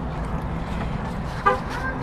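Steady vehicle traffic noise coming in through an open car window, with a brief car-horn toot about one and a half seconds in.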